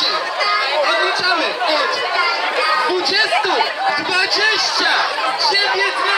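Crowd chatter: many voices talking over one another at once, a steady dense babble.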